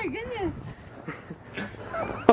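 A short wavering vocal cry from a person on a spinning playground spinner, followed by fainter scattered voices.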